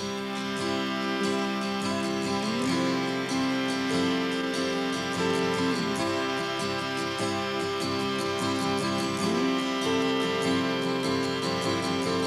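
Instrumental intro of a slow song played live by a trio: strummed acoustic guitar under sustained keyboard chords, with an electric guitar line that holds long notes and slides between them a few times.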